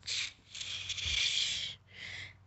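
A person hissing through the teeth in pain, a drawn-out breathy "goshh", after being stung by a caterpillar's spines: a short hiss at the start, then a longer one lasting over a second.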